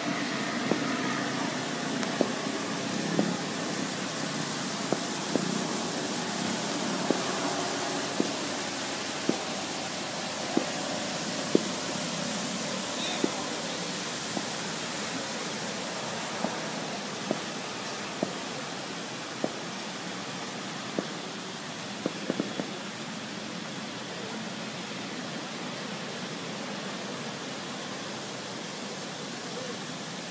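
Steady outdoor hiss with faint distant voices. Sharp clicks come about once a second and stop about two-thirds of the way through.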